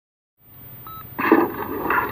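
A short electronic beep about a second in, followed by brief louder sounds.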